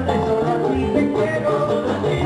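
Live vallenato band playing loudly, with accordion and congas over the rhythm section.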